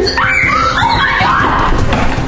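A girl screaming, high-pitched and wavering, over background music.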